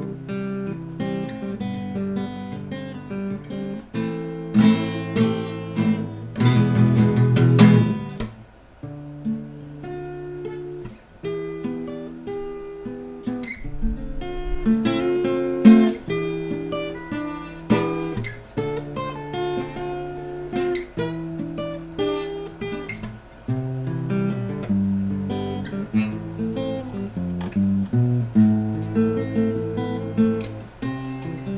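Solo acoustic guitar playing an improvised freestyle: picked melody notes and chords, with a louder burst of fast strumming about six to eight seconds in.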